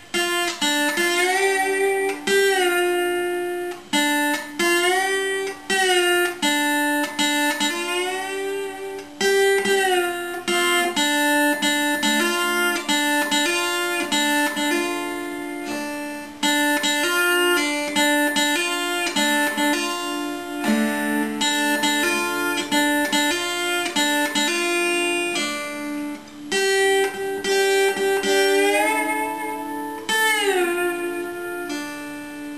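Acoustic guitar converted to lap-style slide guitar, played with a metal slide and finger picks: picked notes and chords that glide up into pitch again and again, in short repeated phrases.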